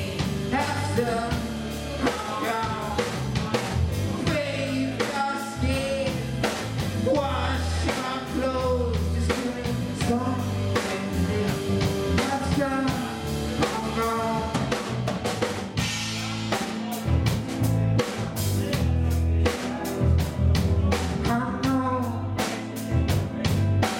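A live rock band playing: a man singing into a microphone over electric guitar, electric bass and a drum kit. The drums and cymbals come forward more strongly in the last few seconds.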